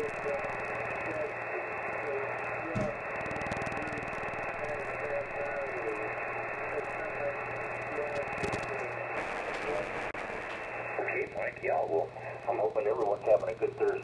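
Single-sideband voice from a distant station received on the 20-meter band through an Elecraft K3S transceiver: a voice faint in steady band noise, coming through more strongly from about eleven seconds in.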